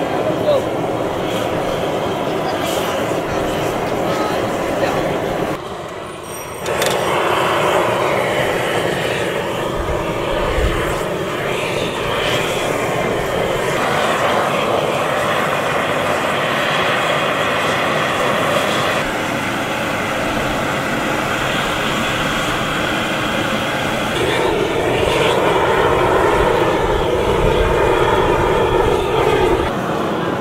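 Handheld LPG torch burning with a loud, steady rushing noise as it heats a Zhangqiu iron wok before the wok is oiled. The rush drops briefly about six seconds in, comes back stronger a second later, and grows louder again in the last few seconds.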